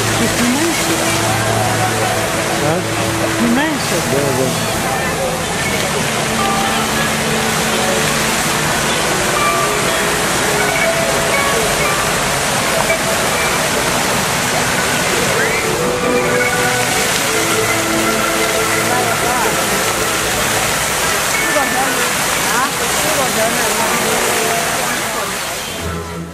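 Fountain water jets spraying in a steady loud rush, with music playing along and voices in the background.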